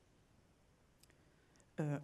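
Near silence: room tone with one faint click about a second in, then a woman's hesitant "euh" near the end.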